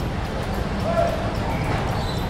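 Steady background noise of a busy covered market hall, with a brief faint voice about halfway through.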